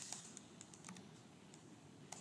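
Faint clicks of computer keyboard keys: a few separate keystrokes at uneven spacing.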